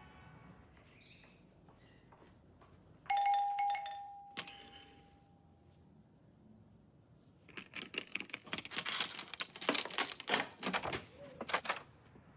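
An apartment doorbell rings once, about three seconds in, and its chime fades over about two seconds. Near the end comes a quick, uneven run of sharp clicks and rattles as the door's locks are undone.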